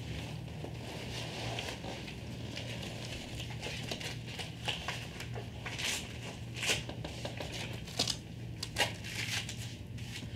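Rustling and short ripping sounds of Velcro leg straps being pulled and fastened around a rider's thighs on a neoprene saddle seat, with a few sharper rips in the second half, over a steady low hum.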